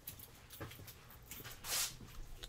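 Baseball cards being handled: faint ticks as cards are moved in the hands, then a short rustle as a card slides against the others, near the end.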